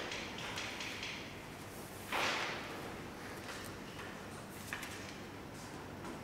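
Quiet hall room tone with faint handling noises from people seated at tables: a short rush of noise about two seconds in and a single small click near the end.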